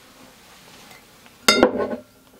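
Glass wine bottle clinking as it is set down among other bottles, a single sharp knock about one and a half seconds in that rings briefly.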